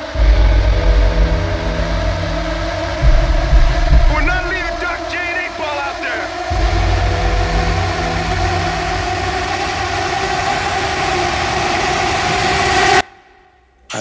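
Dense war-film soundtrack mix: a steady droning layer with heavy low rumbling in stretches, and a shouting voice about four seconds in. The sound cuts off abruptly about a second before the end.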